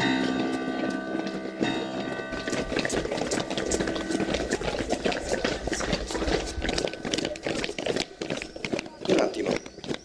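Footsteps of several people marching in hard shoes on stone paving, as many quick, irregular steps. Lingering acoustic guitar notes fade out over the first few seconds.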